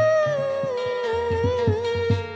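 A woman singing one long held note with vibrato that slides slowly downward, over a Sundanese kacapi zither plucked in a steady rhythm.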